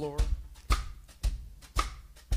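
Drum kit playing a slow country shuffle: the bass drum in an easy four on the floor, four even strokes about two a second, each met by a light hit from one brush and one stick on the snare.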